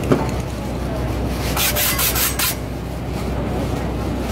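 Street spray-paint art being worked: a run of short hissing bursts about a second and a half in, over a steady low rumble.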